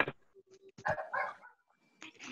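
A dog barking a few short times over a video-call line, about a second in, after a sharp click.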